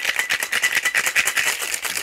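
Ice cubes rattling hard inside a metal cocktail shaker tin in a fast, steady shake, with a thin metallic ring over the strokes. This is the wet shake over fresh ice that chills and dilutes a sour.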